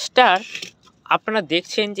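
A man's voice talking in short phrases.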